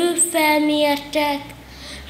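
A boy's voice telling a story at a microphone, words drawn out on long, held pitches, then dropping to a quieter pause for the last half second or so.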